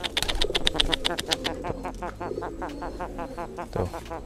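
Domestic pigeon held in hand giving its rapid, rattling 'grok-grok' call, a fast run of clicks strongest for the first second and a half, then fainter. It is the call of a pigeon still worked up in its courtship drive (giring).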